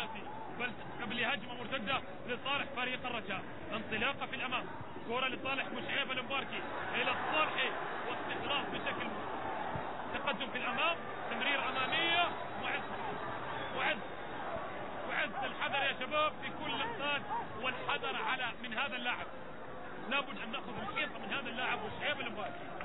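A man speaking over a steady crowd hubbub.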